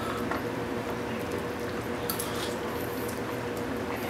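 Pot of Korean pollack roe soup simmering over low heat, a steady soft bubbling, with a constant faint hum beneath and a couple of faint brief noises.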